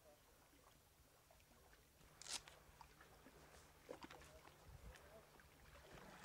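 Near silence: faint ambience with a few soft clicks, the clearest about two seconds in.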